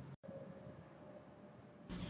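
Near silence: faint room tone with a faint steady hum, and a short click near the end.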